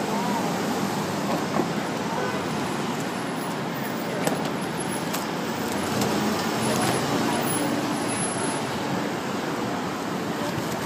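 Steady street noise of passing traffic with indistinct voices of people nearby, and a few faint clicks around the middle.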